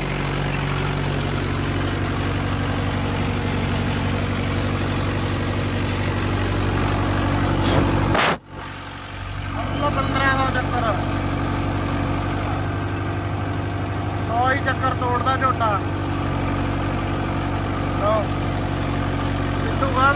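Mahindra Yuvo 585 tractor's four-cylinder diesel engine running steadily at about 1500 rpm, with the sound cutting out for a moment a little past the middle.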